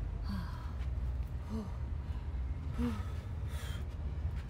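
A woman breathing hard and gasping, with three short voiced gasps spaced about a second and a half apart, winded from kicking exercises. A steady low rumble runs underneath.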